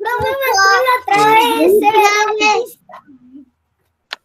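A child's high-pitched voice over a video call, held and sliding up and down in pitch like singing or a drawn-out sing-song, for the first two and a half seconds or so, then stopping.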